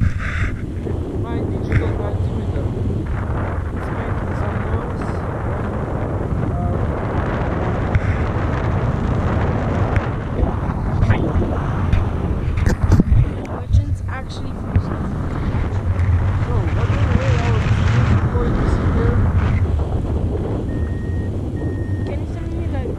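Wind rushing over the camera microphone in flight under a paraglider, a steady buffeting rumble with a few brief knocks and gusts.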